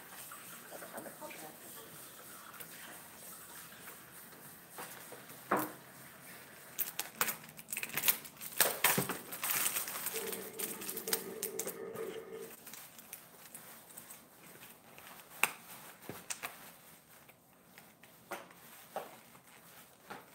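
Plastic toy packaging being handled and opened: crinkling, scraping and light clicks and taps as the wrapping on a plastic cup container is picked at and cut, busiest about seven to twelve seconds in.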